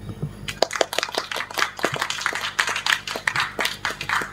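Applause from a small audience: many irregular individual hand claps, starting about half a second in.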